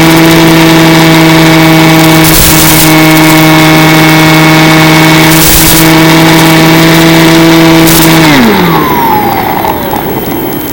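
Mini Skywalker RC plane's electric motor and propeller running at a steady, even pitch, with a few brief bursts of hiss. A little over eight seconds in the throttle comes off and the pitch falls away as the motor winds down.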